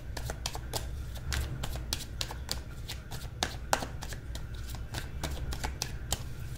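A deck of tarot cards being shuffled by hand: a continuous run of quick, irregular card clicks and flicks.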